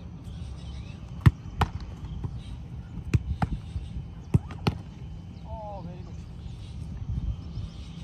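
Footballs being kicked and stopped on a grass pitch: sharp thuds in three close pairs, each pair a fraction of a second apart, followed by a short shout.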